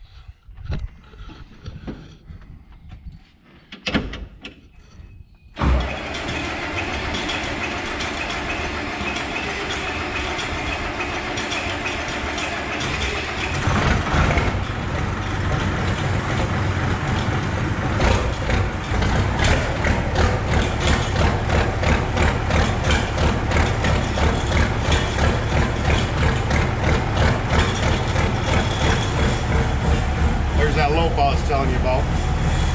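Turbocharged diesel tractor engine being started from the cab: after a few knocks, the engine noise comes in suddenly about six seconds in, grows heavier about fourteen seconds in, and settles into a steady running beat.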